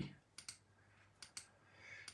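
Two faint double clicks of a computer mouse button, about a second apart: the press and release of each click on a random number generator's Generate button.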